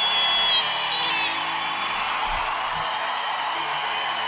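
Audience and judges applauding and cheering, with whoops, as the last sung note dies away in the first second.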